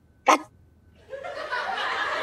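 A short vocal exclamation about a third of a second in, then crowd laughter from a sitcom laugh track swells up about a second in and carries on.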